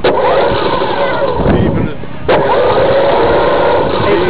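Radio-controlled model buggy's motor revved in two bursts of steady high whine: one at the start lasting almost two seconds, and a second that cuts in sharply a little past the middle and holds.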